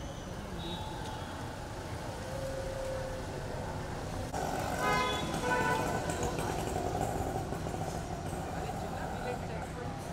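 Busy street at night: steady traffic rumble under a murmur of voices, with a louder pitched burst of calling about halfway through.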